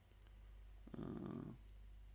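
A man's short, low, rough breath out, about a second in, over a faint steady electrical hum.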